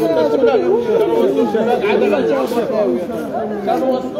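A crowd of people talking loudly over one another, many voices overlapping at once in a large hall.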